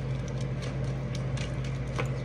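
Tarot cards being shuffled by hand, a run of soft, irregular little clicks and slaps over a steady low hum.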